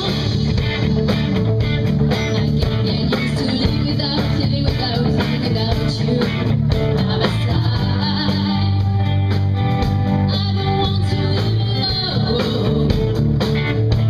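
Live rock band playing: guitars, bass guitar and a drum kit keeping a steady beat, with a woman singing.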